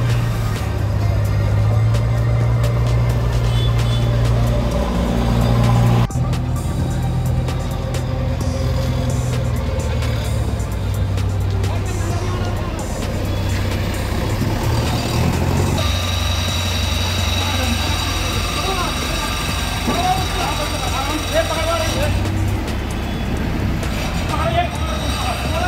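Diesel engines running with a steady low hum: street traffic at first, then a JCB backhoe loader's engine. The hum changes abruptly about six seconds in and again past halfway, with voices around it.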